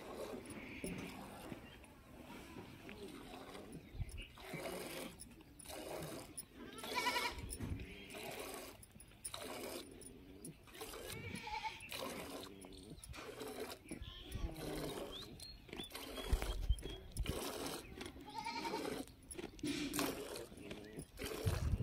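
Goats bleating a few times in short calls, among repeated short noisy sounds.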